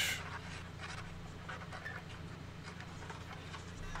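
A StewMac cabinet scraper being drawn over and over across a flamed wooden guitar headstock face, giving faint, irregular scratchy strokes over a steady low hum.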